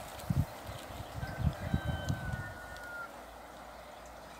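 Wind gusting on the microphone for the first couple of seconds, over the faint steady hiss of a small running stream. A single thin whistled note, falling slightly in pitch, is held for about two seconds in the middle.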